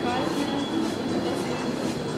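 Steady rumbling background noise of a large indoor food court, with faint distant voices in it.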